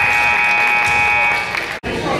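A gym scoreboard horn sounds one steady electronic note for about a second and a half over gym noise, then the sound cuts out briefly near the end.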